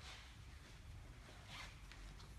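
Faint room tone with two short, soft rustling swishes, one at the start and a longer one about one and a half seconds in.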